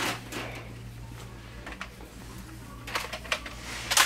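Plastic toy blasters being handled: a few light knocks and clicks, near the start and again about three seconds in, over a steady low hum.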